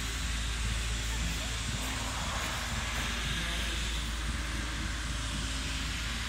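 Steady outdoor noise on a phone microphone: a constant low rumble with an even hiss over it, and faint voices in the background.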